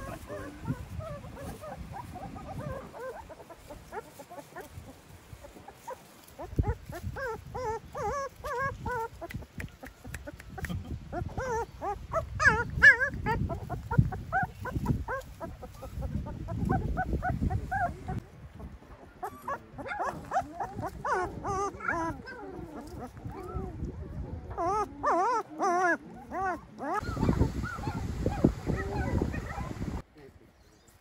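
Month-old puppies whimpering and yelping in many short calls, coming in bunches; they are hungry and waiting for their mother to nurse them.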